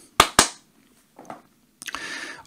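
Two sharp clicks about a fifth of a second apart, a computer mouse button being clicked.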